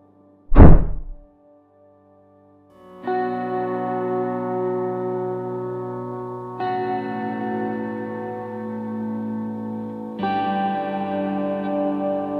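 A single heavy thud about half a second in, followed by a brief silence. Then slow background music starts, held chords that change about every three and a half seconds.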